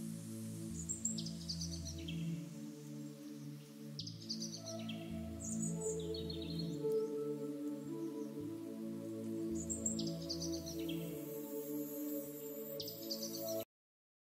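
Calm ambient background music with sustained chords, and chirping bird-like calls mixed in every few seconds; the track cuts off suddenly near the end.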